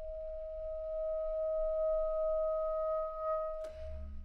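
Bass clarinet holding one long high note that swells slightly and then stays steady. Near the end it breaks off with a sharp click, and a brief low note follows.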